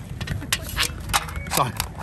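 Aluminium foil pie tray crinkling and clicking in a few short crackles as hands work a meat and potato pie out of it.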